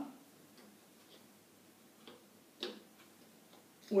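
Faint room tone with a few soft ticks and one sharp click about two and a half seconds in: chess pieces being handled and set on a wall-mounted demonstration chessboard.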